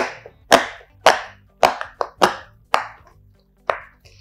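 Rainbow square silicone pop-it fidget toy having its bubbles pushed in by fingertips on its soft side, one sharp pop after another. There are about seven pops, roughly two a second, with a short pause before the last.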